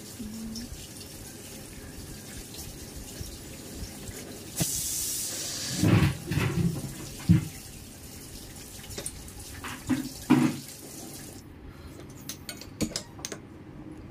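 Water running steadily, with a brighter rush of water about five seconds in and a few dull knocks around six and ten seconds.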